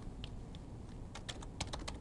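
Typing on a computer keyboard: a couple of light keystrokes, then a quick run of keystrokes in the second half.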